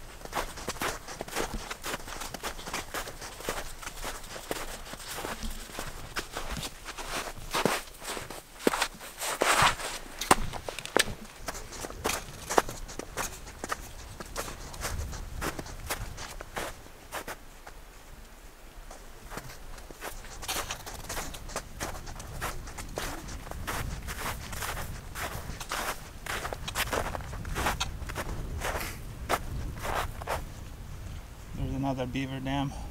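Footsteps crunching through snow as a hiker walks, an uneven run of about two or three steps a second that eases off briefly past the middle.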